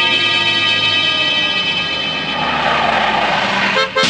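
Car engines running steadily as two cars race across open dry ground, with a rushing noise building in the second half. The sound cuts off suddenly just before the end.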